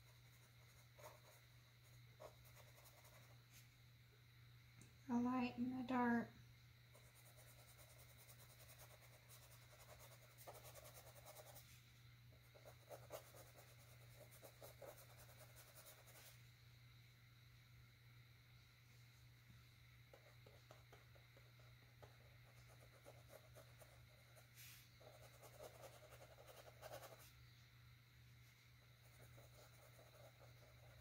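Faint scratchy strokes of a paintbrush working acrylic paint on a canvas panel, over a steady low hum. About five seconds in, a brief, louder sound from the painter's voice, with no words.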